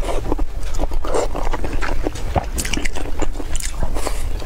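Close-miked chewing and biting of a mouthful of stewed green beans: a dense run of small clicks and smacks over a steady low rumble.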